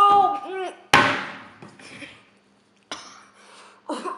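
A boy's high-pitched wordless whine, his reaction to extremely sour candy, breaks off a little under a second in. It is followed by a sudden sharp cough that fades away, and a softer breathy burst near the end.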